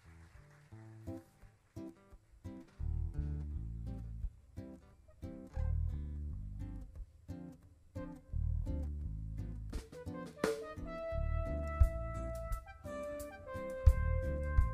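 Live band playing a song's opening: a guitar picking a rhythm, with an electric bass coming in about three seconds in. Held melody notes join near the end.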